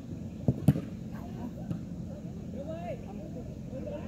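Two sharp knocks about a quarter second apart, about half a second in, the second louder, followed by faint distant shouting voices.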